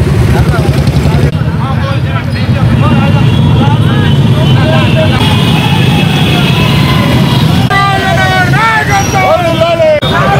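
Many motorcycle and vehicle engines running together at a slow rally pace, a steady low rumble. Voices shout over it, loudest and highest near the end.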